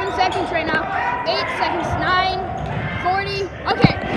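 A basketball bouncing on a gym floor amid people talking, with a few sharp thuds, the clearest near the end.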